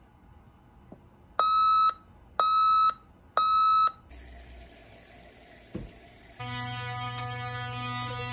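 Digital alarm clock beeping three times, one short pitched beep about every second. After it comes a hiss and a brief thump, then a steady electric toothbrush buzz starting about six seconds in.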